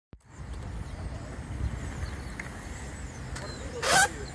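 Outdoor city street ambience: a steady low rumble, with a brief loud rush of noise near the end.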